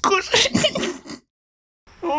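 A short, noisy, throaty comic vocal sound effect with the title stinger, made of a few rough bursts that stop a little over a second in.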